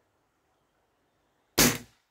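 Gamo Big Cat 1000 E break-barrel air rifle firing a single shot about one and a half seconds in: one sharp report that dies away within a fraction of a second.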